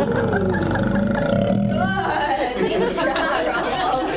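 South American sea lion giving a low, drawn-out growling call during the first second and a half, then people's voices and chatter.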